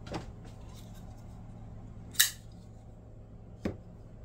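Folding pocket knives being handled and laid out: a sharp metallic click a little past halfway through, with softer clicks near the start and near the end.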